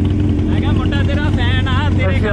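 Motorcycle engines idling: a steady, uneven low rumble, with men's voices talking over it.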